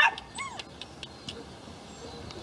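Puppies yipping: a sharp yip right at the start, then a short, high yip that rises and falls in pitch about half a second in.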